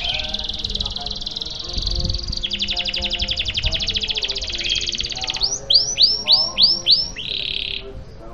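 Domestic canary singing a long continuous song. It starts with a trill and a fast rolling passage, then breaks into five arched whistled notes and ends on a buzzy note shortly before the end.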